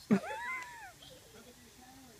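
A child's short, high-pitched squeal that rises and then falls in pitch, lasting under a second.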